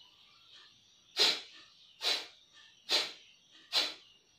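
Kapalbhati breathing: four sharp, forceful exhalations through the nose, about one a second, starting about a second in, each a short puff of air as the stomach is snapped inward.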